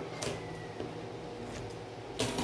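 Scissors and fabric being handled on a cutting mat: two soft clicks, one shortly after the start and one past the middle, over a steady low hum.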